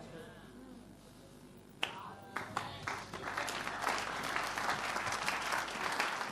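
Church congregation applauding: a quiet opening with a faint murmur of voices, then clapping breaks out about two seconds in and grows fuller and louder to the end.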